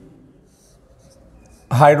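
Marker pen on a whiteboard drawing an arrow: a few faint, short strokes.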